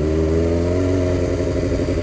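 Motorcycle engine running at low speed as the bike rolls slowly, its pitch rising a little about half a second in and then holding steady.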